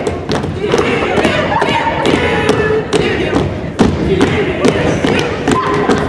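Repeated heavy footfalls and stomps thudding on a stage floor, several a second at an uneven pace, with voices calling out over them.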